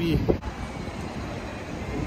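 Steady noise of road traffic, vehicles running on the street, with no distinct horn, brake or pass-by standing out.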